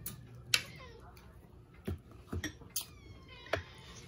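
Utensils clinking against ceramic plates and bowls several times, the sharpest about half a second in, with a cat meowing between the clinks, its cries falling in pitch.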